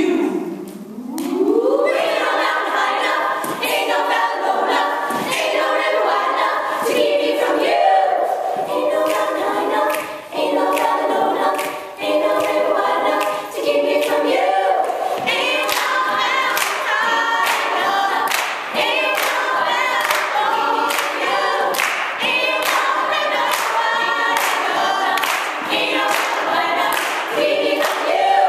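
Women's a cappella group singing in close harmony, a solo voice at a microphone over the backing voices. A voice slides upward near the start, and sharp percussive beats join the singing from about halfway.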